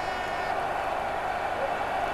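Steady crowd noise from a large football stadium crowd.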